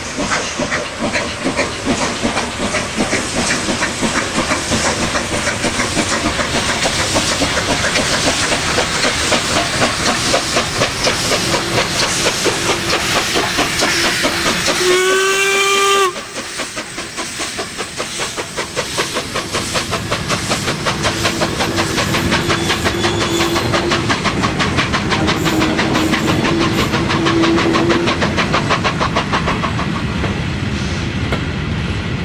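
A steam locomotive working hard as it pulls away, rhythmic exhaust beats over a steady hiss of escaping steam. About halfway through it gives one short blast on its steam whistle.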